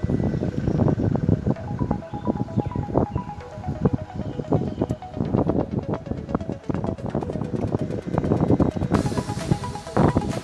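Background music with a steady beat and repeated melodic notes.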